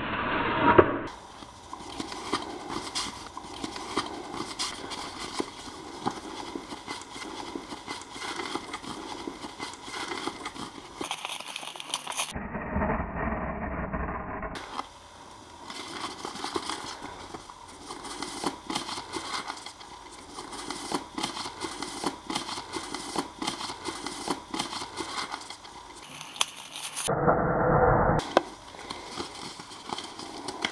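Paper cut-outs being handled, folded and crumpled by hand: a dense run of small crackles and rustles. The sound changes abruptly a few times, with short louder, muffled stretches about halfway through and near the end.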